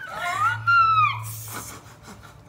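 A woman's high-pitched squeal of excitement that rises and then falls in pitch over about a second, followed by a short breathy burst.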